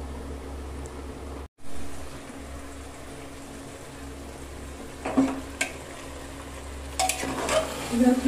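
A metal spoon stirring and scraping mutton curry as it fries in an open pressure cooker, with clinks against the pot about five seconds in and again near the end, over a low steady hum. The sound cuts out briefly about one and a half seconds in.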